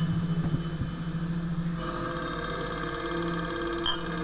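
A steel ball hanging above a glass disc in a sound sculpture touches the glass, giving a buzzing ring made of several steady high tones from about halfway through. Under it runs a steady low humming drone from a resonating sound sculpture.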